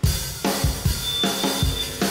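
Live rock band with its drum kit playing a driving beat of kick drum, snare and cymbals, starting suddenly. Sustained guitar and bass notes join about half a second in.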